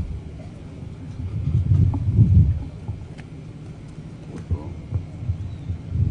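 Low rumbling thuds picked up by a handheld microphone held close to the mouth, strongest about two seconds in and again briefly later, with no clear words.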